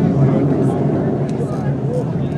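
Distant, steady low rumble and crackle of Space Shuttle Endeavour's solid rocket boosters and main engines during ascent, with spectators' voices over it.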